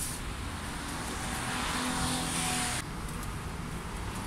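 Road traffic: a steady hiss of tyres on a wet road with a faint engine hum, whose upper hiss drops away abruptly about three seconds in.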